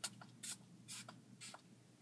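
Four short, faint rustles of hands handling a doll's hair and a knotted cloth strip.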